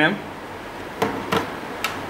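A few short, sharp clicks and knocks from about a second in: multimeter test leads being pulled out of the trainer board's sockets.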